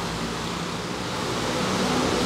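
Steady rushing background noise with a faint low hum, growing slightly louder toward the end.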